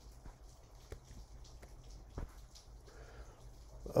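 A few faint, scattered clicks from a computer keyboard or mouse over low room hum, the strongest about two seconds in.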